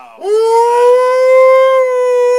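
A man's voice holding one long, loud, high note, rising at the start and then held steady, like a howl.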